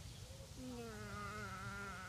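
A flying insect, such as a fly or bee, buzzing near the microphone: a steady, faint buzz that starts about half a second in and sinks slightly in pitch.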